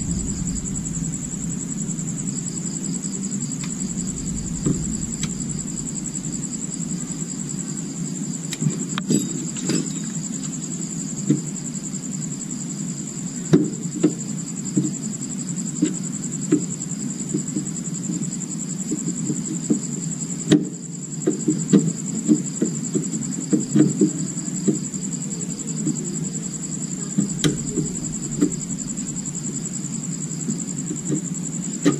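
Crickets chirring steadily in the background over a low steady hum, with scattered light clicks and taps from hand-tool work on a plastic scooter battery case, most of them in the second half.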